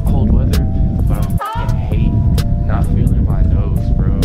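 Background music with a heavy bass beat, held synth notes and sharp percussive clicks; the bass cuts out for a moment about a second and a half in.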